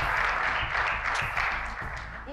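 Studio audience applauding, the clapping thinning and fading out near the end.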